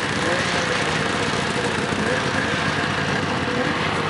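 Snowmobile engine idling steadily.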